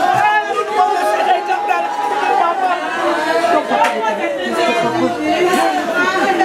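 Several women weeping and wailing in grief, their voices overlapping, with other mourners' voices around them: mourning for a death.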